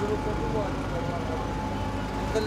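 Busy street ambience: people talking over a steady rumble of passing traffic.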